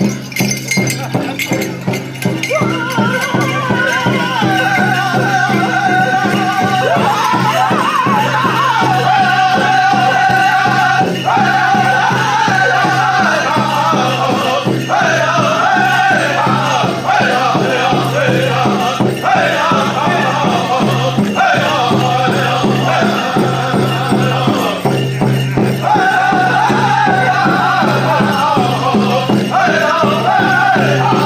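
Powwow drum group performing a strict grass dance song: a steady, fast drumbeat, joined about two seconds in by high-pitched group singing in long phrases with short breaks between them.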